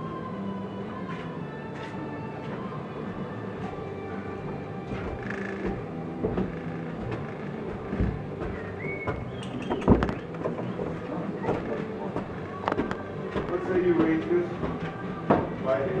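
Indoor room sound of faint, indistinct voices and steady tones, broken by a few sharp knocks; the loudest knock comes about ten seconds in.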